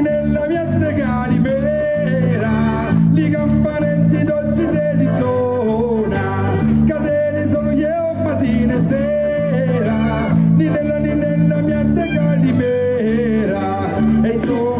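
A live folk band of violin, guitar, keyboard and tambourine playing an upbeat tune with a steady beat and a sung melody over it.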